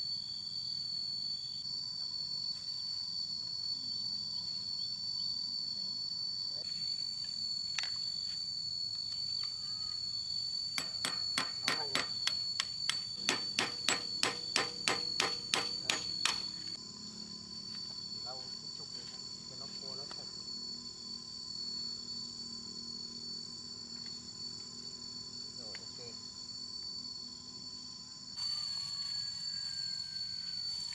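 A run of about twenty quick hammer blows on the metal of a tractor's wheel hub and axle, roughly three or four a second, ringing sharply, midway through. Insects buzz steadily at a high pitch throughout.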